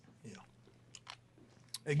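Faint mouth sounds of a hard butterscotch candy being eaten, with a few small sharp clicks.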